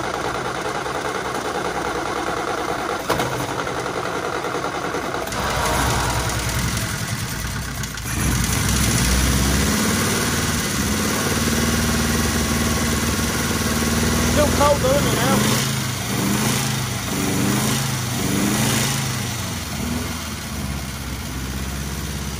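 Austin 7's four-cylinder side-valve engine running on three cylinders, with one cylinder not firing. About eight seconds in it gets louder as the revs go up, holds there for several seconds, then eases back.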